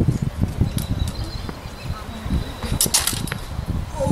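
Wind buffeting the microphone, with a quick cluster of sharp metallic clicks about three seconds in as the rapier blades meet.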